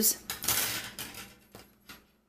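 Nylon pantyhose being stretched and rubbed over a thin wire coat hanger, a scratchy rustle of fabric on wire that fades out, with a couple of light knocks near the end.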